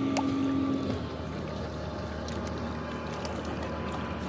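A motorboat engine's steady drone carries across the lake over small waves lapping at shoreline rocks. The engine's strongest tone cuts off about a second in, leaving a fainter hum.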